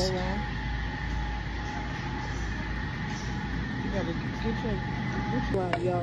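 Steady low background hum with a faint constant high tone inside a shop, and faint voices a few seconds in.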